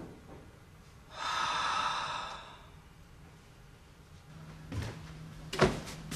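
A long breathy exhale lasting over a second, about a second in, then light clicks and a sharp, louder click near the end from the handles of glass-panelled double doors.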